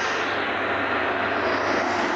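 Steady rush of road traffic with a low engine hum as a van drives past close by.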